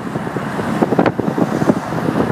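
Wind buffeting the microphone over the road noise of a moving car, heard through an open side window, in uneven gusts with a sharp one about a second in.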